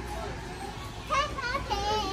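High-pitched children's voices chattering and calling, louder from about a second in, over a low steady hum and murmur of the shop.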